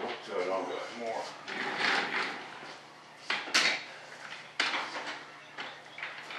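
Clatter of parts and tools being handled on a workbench, with a few sharp knocks in the second half, the loudest about halfway through. Indistinct voices in the first half.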